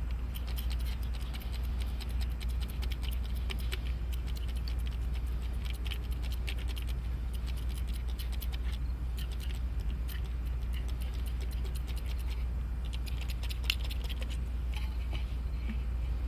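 Gun cleaner squirted over a metal filter screen and its screw, dripping and pattering into a metal can, with small metal clicks and taps as the parts are turned and handled. A steady low hum runs underneath.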